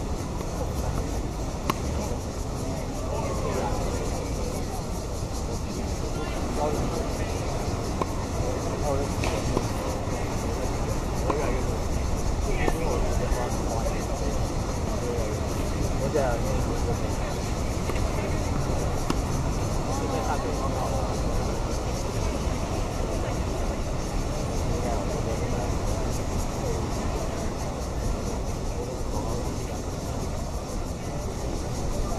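Steady low outdoor rumble with faint, distant voices coming and going, and a few sharp knocks scattered through it.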